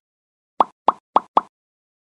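Four short cartoon 'pop' sound effects in quick succession, about a quarter second apart, over dead silence. They are an end-screen animation's sound, one pop for each of the four like/favourite/share/follow icons.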